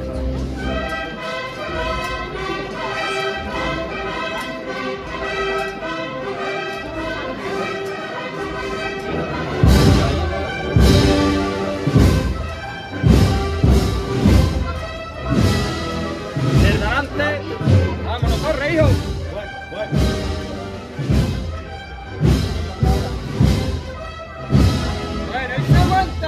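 Band playing a Spanish processional march: sustained brass and woodwind chords, with heavy drum beats coming in about ten seconds in and carrying on roughly once or twice a second.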